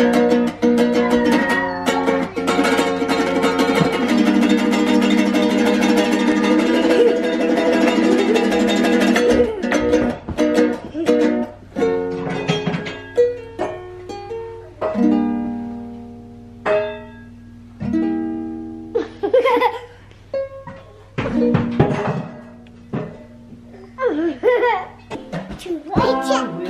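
A children's ukulele, out of tune, strummed steadily for about nine seconds, then single chords struck with pauses between them.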